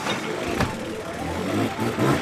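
Dirt bike engine running as the motorcycle rides up, its low hum building in the second half. A single thump about half a second in.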